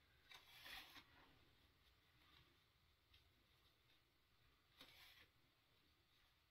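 Near silence, with faint rustling of fabric twice, about half a second in and near the end, as a shorts waistband is bunched and pushed along a safety pin threading a drawstring.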